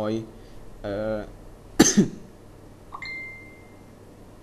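A person coughing twice in quick succession about halfway through, between short snatches of speech. Near the end a small click is followed by a brief thin steady high tone.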